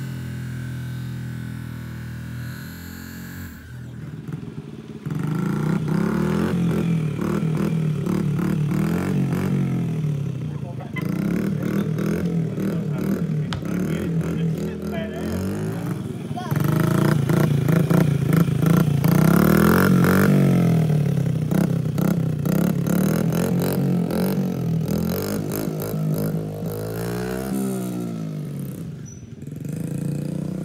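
Small dirt bike engine running and being revved, its pitch rising and falling, getting louder about five seconds in.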